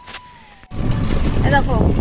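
Steady rumble and road noise inside a moving passenger vehicle, cutting in suddenly about a third of the way through, with a woman talking over it from about halfway.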